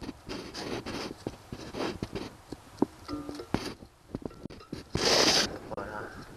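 Fingers handling a stuck plastic wiring-harness connector on an oxygen sensor plug: irregular sharp clicks and ticks as the plug is squeezed and pulled. A louder burst of rustling comes about five seconds in.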